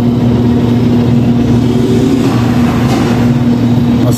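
Electric motor of a churro-extruding machine running steadily, turning the screw augers that push the chilled churro dough through the machine: a loud, even hum with a steady tone.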